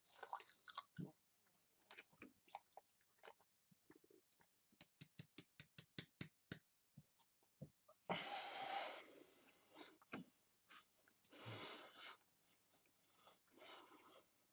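Mouth noises of a person eating a mouthful of dry ground cinnamon: a quick series of small clicks and smacks of chewing, then two longer breathy, wheezing exhalations about 8 and 11 seconds in.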